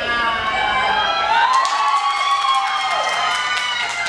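Several voices shouting long, drawn-out cheers over one another, celebrating a goal just scored.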